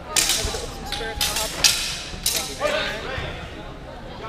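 Steel longswords clashing and striking in a fencing exchange: several sharp hits in the first two and a half seconds, then a shout about three seconds in.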